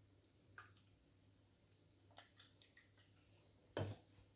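Near silence with a few faint clicks from a plastic dropper bottle being handled and squeezed, then one short knock near the end as the bottle is set down.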